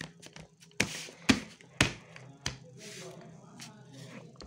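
Hands handling and pressing layered corrugated cardboard pieces on a table: four sharp knocks roughly half a second apart, with scraping rustles between them.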